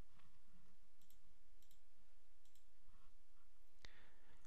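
A handful of faint, scattered clicks from a computer mouse over a low, steady hum of room tone.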